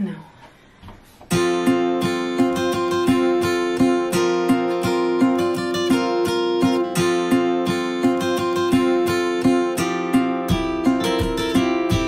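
Background music of strummed and plucked acoustic guitar, coming in suddenly about a second in with an even picking rhythm; lower notes join near the end.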